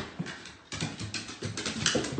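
A dog's paws and claws clattering on hardwood stair treads in a run of irregular knocks, loudest near the end.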